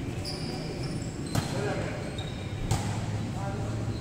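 A volleyball being struck during a rally, with two sharp hits about a second and a half in and again just under three seconds in. Brief high squeaks and players' voices sound around them.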